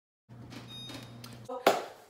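A wall oven's door being shut on a pan of brownies: a low steady hum, then one loud knock about a second and a half in.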